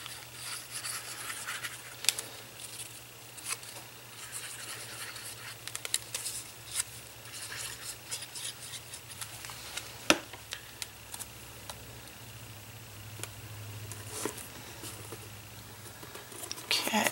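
Soft rubbing and rustling of paper strips being handled and laid onto a cardboard box, with scattered light clicks and one sharper tap about ten seconds in.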